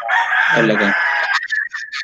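A rooster crowing once, loud and harsh for about a second and a half, trailing off into a thin held note near the end.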